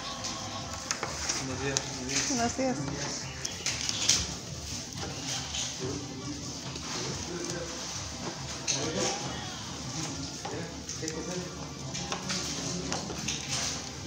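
Indistinct background voices with some music, and no clear sound from the work standing out.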